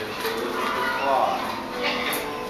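Indistinct voices of people nearby with background music, and a brief wavering, high-pitched voice-like call about a second in.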